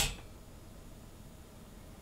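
A single sharp click right at the start as the load is switched from eight ohms to four ohms, then only faint room tone.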